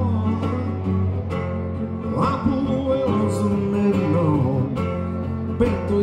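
A man singing with his own acoustic guitar accompaniment in a live solo performance, the voice bending between held notes over the strummed guitar.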